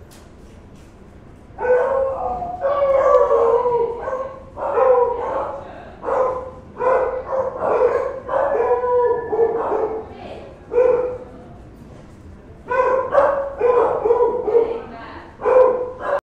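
A dog left alone in the room vocalising in a long series of pitched yelps and barks. The calls start about a second and a half in, pause briefly near three-quarters of the way through, then resume.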